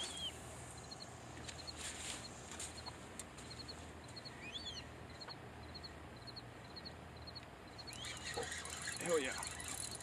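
Small birds calling: a short high chirp repeated about twice a second, with a few rising and falling whistled calls, over faint steady background. Near the end, a high hiss with clicking rises from the spinning reel as a fish strikes the bait.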